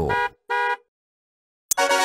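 Two short, steady car-horn beeps in quick succession, then a second of dead silence.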